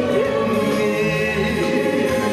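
A man singing a Korean popular song into a handheld microphone, over a recorded backing track, with sustained, held notes.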